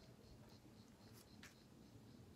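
Near silence: faint background hiss with a few faint short ticks.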